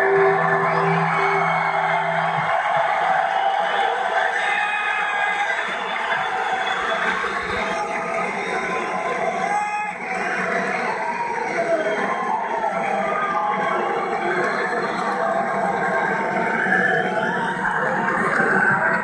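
The last sustained, effects-laden guitar notes of a live rock band ring out and fade over the first two seconds, and a large arena crowd cheers and shouts.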